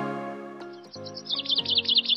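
Soft intro music fading away while a small bird starts chirping about half a second in: a fast run of high, short chirps that grows louder.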